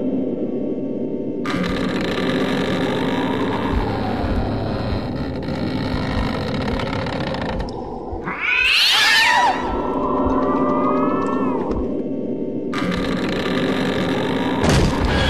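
Sustained dramatic background score with a sudden shrill screech about eight seconds in, sweeping up and down and trailing off in wavering cries, like a cat's yowl.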